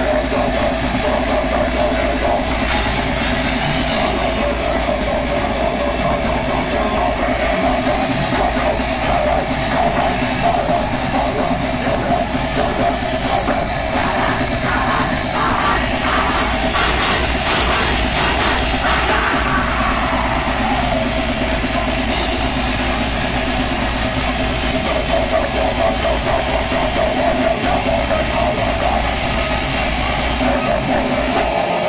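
Death metal band playing live at full volume: heavily distorted electric guitars and drums, with the vocalist singing into the microphone, in a dense, unbroken wall of sound.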